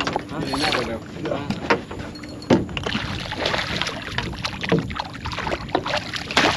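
Hooked redfish thrashing at the water's surface, irregular splashing and sharp slaps that grow busier about halfway through.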